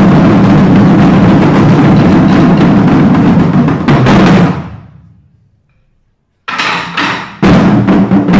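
A drum ensemble of barrel drums on stands playing a fast, dense roll that ends about four seconds in on a strong unison stroke, which rings and fades to silence. After a short pause the drums come back in with a few strokes, then full drumming resumes near the end.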